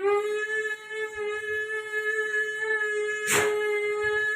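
A small handheld wind toy or whistle blown in one long, steady note. A short noisy burst cuts across it a little after three seconds.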